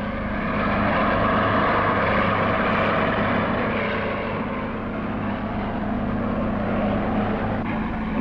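Heavy earth-moving machinery running with a steady, dense engine drone, growing louder about a second in.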